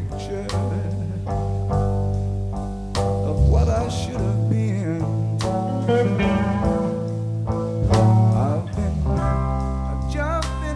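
Live slow blues band, instrumental: an electric lead guitar plays sustained, bent notes over bass guitar and drums.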